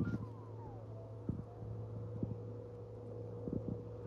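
The last few falling notes of background music in the first second, then a steady low hum with a few faint clicks.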